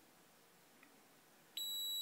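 Milwaukee M12 Sub-Scanner stud finder's beeper comes on suddenly about one and a half seconds in with a steady high-pitched tone that holds. It is the scanner's audio signal that it is over the centre of a wood stud.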